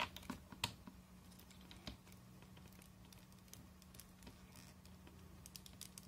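Faint small clicks and handling noise from a plastic S.H.Figuarts action figure as its arm is pressed back into the shoulder joint. Several clicks come in the first second and one more near two seconds in, over a low steady hum.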